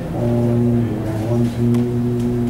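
A man's voice chanting Quran recitation (tilawah) into a microphone, holding long, level melodic notes broken by short breaths.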